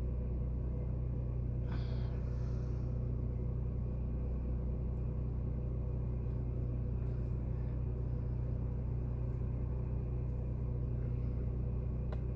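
A steady low machine hum with a few faint steady tones above it, unchanging throughout, and a faint brief scrape about two seconds in.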